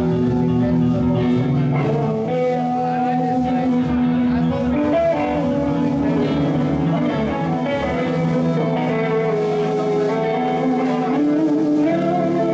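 Live electric guitar and bass guitar jamming together: the guitar plays long held notes that change pitch every second or two over a pulsing bass line.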